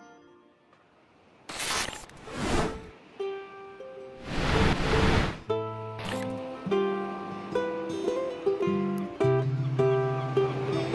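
Two swells of static-like hissing noise, then from about halfway through a ukulele picking a melody over low bass notes as the song's intro begins.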